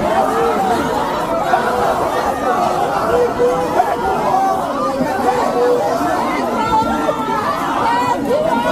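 A packed crowd of many people talking over one another, loud and continuous, with no single voice standing out.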